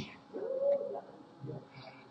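A short, high, voice-like cry that rises and falls in pitch, followed by a couple of brief fainter sounds.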